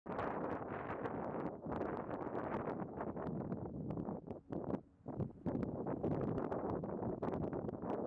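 Wind buffeting the microphone outdoors, gusty and crackling, with two short lulls about halfway through.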